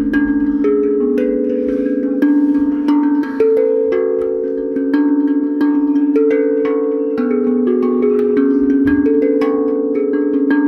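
Pitched mallet percussion played slowly: each soft strike starts a long ringing note, and the notes overlap as the melody steps between a few pitches about once a second.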